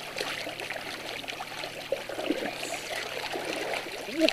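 Homemade board paddle dipping and pulling through shallow water, with irregular small splashes and water trickling and gurgling around a small tarp-hulled bullboat.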